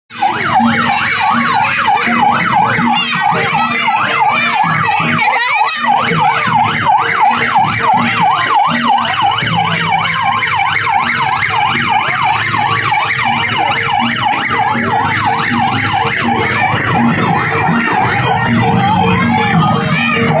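Electronic siren sounding a fast yelp, its pitch sweeping up and down about four times a second without a break.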